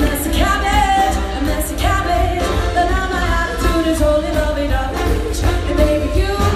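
Live band performance, with a woman singing the lead vocal in long, bending held notes over drums and electric guitars, recorded from the audience seats in a large hall.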